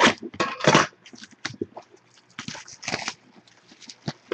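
Plastic shrink wrap being cut and pulled off a box of trading cards, crinkling and crackling in short irregular scrapes.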